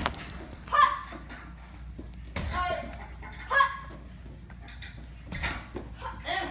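Children's voices in short, loud shouts, about four in the space of six seconds, like the "Hut!" kiai of a martial-arts drill. A sharp knock comes right at the start.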